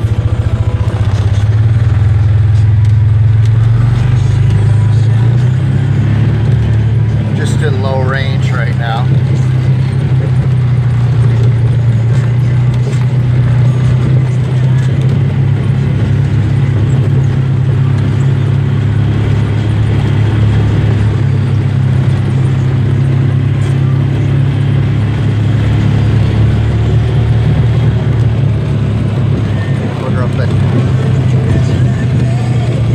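Polaris side-by-side engine running at a steady, low drone while the machine drives around, heard from inside the cab. A brief voice-like sound comes about eight seconds in.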